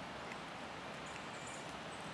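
Faint, steady hiss of light sprinkling rain outdoors, with a couple of soft ticks.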